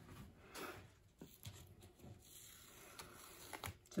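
Nearly silent room with a few faint, scattered soft taps and rustles from hands handling stenciling supplies.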